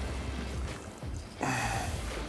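Wind and choppy water around a small boat, a low steady rumble, then a man's short strained vocal sound, a grunt or gasp, about a second and a half in.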